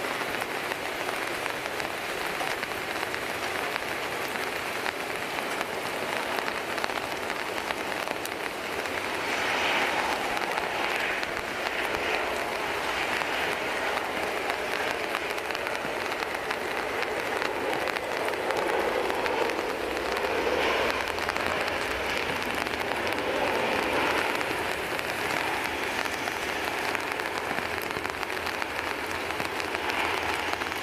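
Steady rain falling on a nearby surface, a continuous hiss and patter, with the noise swelling louder about ten seconds in and again through the middle of the second half.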